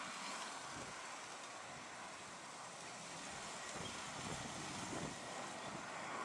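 Wind blowing on the microphone: a steady hiss with irregular gusty low rumbles, more of them in the second half.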